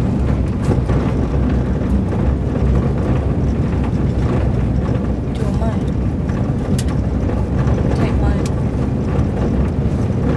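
Steady low rumble of a minibus on the move, engine and road noise heard from inside the cabin, with a few light clicks and rattles about halfway through and near the end.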